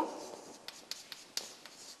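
Chalk on a blackboard: a series of faint, short taps and scratches as figures are written.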